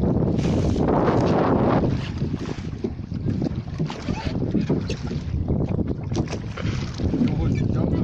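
Wind buffeting the phone's microphone, heaviest in the first two seconds, over water splashing around a wooden rowing boat under oars, with scattered short knocks.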